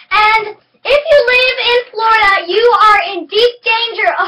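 A young girl's voice singing, in three or four short phrases.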